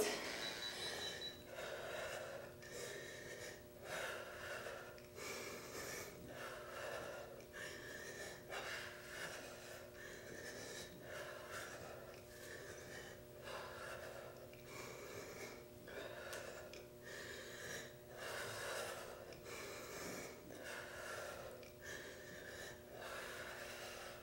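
A woman breathing hard in a steady rhythm during toe touch crunches, with a short, sharp breath roughly every second and a half as she reaches up with each rep. The breathing is faint, over a low steady hum.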